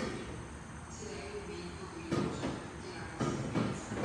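Two brief handling noises, short scuffs and knocks about two and three seconds in, as the high and low calibration gas bottles are being shut off.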